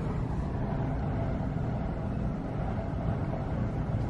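Steady low rumble of store background noise, with a faint steady hum above it.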